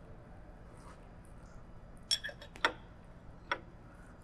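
A few light metallic clicks and clinks, three close together about halfway through and one more a little later, as a steel spindle wrench is fitted onto the drawbar of the CNC router spindle.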